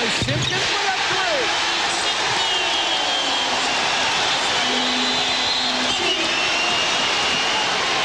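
Loud, steady arena crowd noise during a college basketball game, with basketballs bouncing on the hardwood and short high sneaker squeaks from players running the floor.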